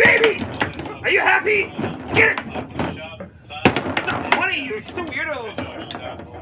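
Sharp knocks of a foosball being struck by the rod figures and banging off the table's walls in fast play, the loudest cluster a little past halfway, amid excited voices.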